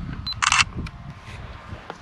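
Digital camera taking a picture: a short high beep, then the shutter firing in a brief burst about half a second in, followed by a couple of faint clicks.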